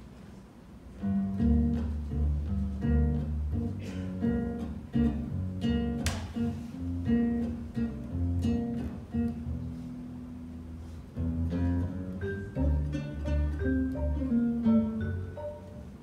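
Acoustic guitar and plucked upright bass playing the opening of an instrumental combo piece, starting about a second in.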